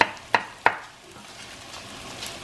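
Chef's knife chopping potato on a wooden cutting board: three sharp chops about a third of a second apart, then a faint steady sizzle from onions and carrots sautéing in butter in a Dutch oven.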